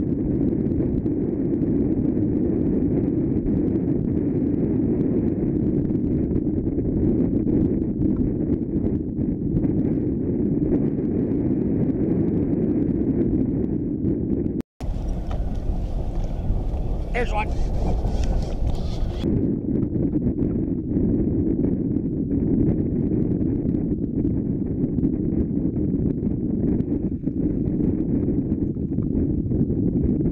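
Steady, muffled wind noise on the microphone of a camera aboard a boat. About halfway through it breaks off for an instant, sounds clearer and brighter for a few seconds with a thin wavering whistle, then goes back to the muffled rush.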